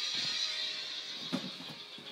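Faint music playing in the background, with a brief soft knock a little past halfway.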